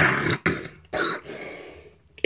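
A man coughing: two harsh coughs, one at the start and another about a second in.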